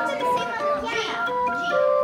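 Orgelkids wooden pipe organ playing short notes in quick succession, each a steady pipe tone, with several sounding together near the end.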